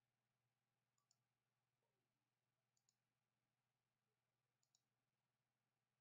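Near silence, with three very faint computer-mouse double clicks, about one every two seconds.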